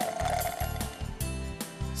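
Cartoon sound effect of someone sipping a drink through a straw, its slurping noise ending just after the start, over children's background music with a steady beat.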